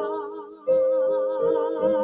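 A woman's voice singing long, slow held notes with vibrato over sustained accompanying chords, without clear words.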